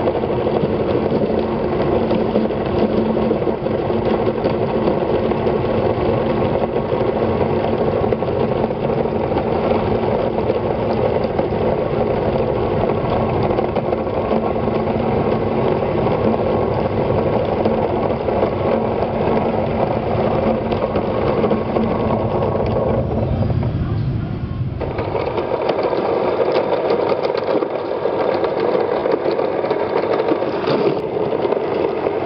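Meat grinder running steadily as it grinds raw flesh and forces it out through the plate, a continuous mechanical grinding. About 24–25 seconds in the sound shifts and loses some of its low end.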